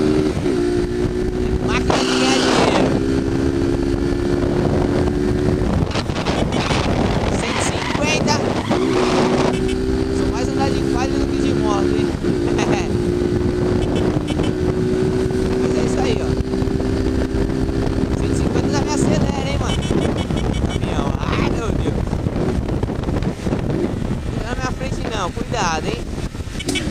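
Motorcycle engine running at steady road speed with wind rushing on the microphone. The engine note holds level for several seconds at a time and drops away about six seconds in and again around nineteen seconds in.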